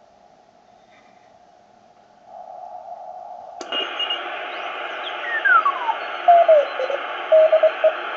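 Receiver audio from a Ten-Tec Century 21 CW transceiver being tuned across a band: faint hiss that suddenly widens and gets louder about three and a half seconds in, then a whistle sliding steadily down in pitch as the dial passes a signal, settling into a Morse code signal keyed on and off as a tone near 600 Hz.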